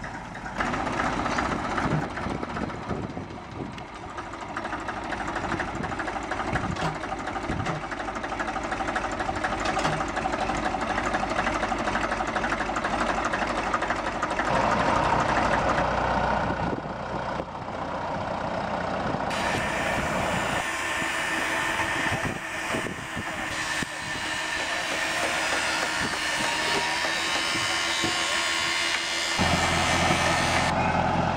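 Small narrow-gauge diesel locomotives running along the track with a steady engine drone. Partway through, the sound jumps abruptly to a yellow BN60H diesel locomotive hauling a track-tamping machine.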